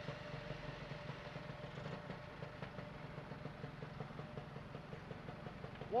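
Vehicle engines idling in stopped traffic at a red light: a steady low rumble.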